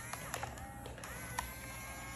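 Small electric motors of a remote-control Yigong toy excavator whining faintly as it dumps a bucket of sand and swings its upper body round. The whine slides up in pitch at first, then holds steady at two pitches from about halfway, with a few light clicks.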